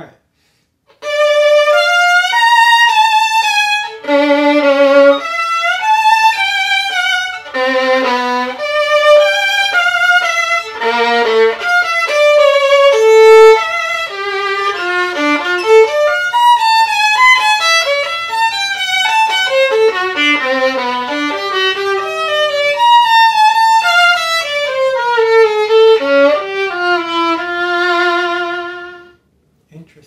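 Solo violin, strung with Pirastro Perpetual strings and fitted with a Pirastro KorfkerRest Luna shoulder rest, playing a slow melodic passage with vibrato. The passage dips into low notes on the G string several times and stops about a second before the end.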